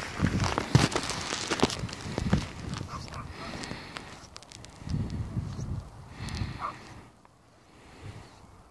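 Crackling and rustling handling noise close to the microphone, with a few low rumbles in the middle, dying down near the end.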